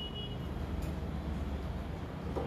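A steady low background rumble with no speech.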